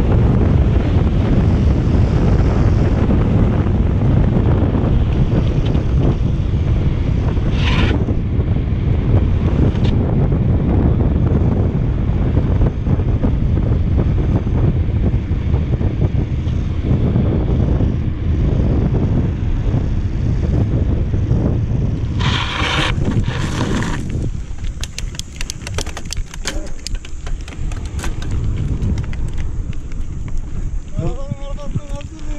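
Wind buffeting the camera microphone as a mountain bike descends a paved road at speed: a dense, loud low rush. A short hiss comes about eight seconds in and a longer one about 22 seconds in. Near the end the wind drops and a run of small clicks and crunches sets in as the bike slows onto a gravel shoulder.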